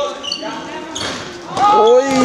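Ball game in a sports hall: a ball thudding on the court floor and players moving. Near the end a loud shout whose pitch falls away, echoing in the hall.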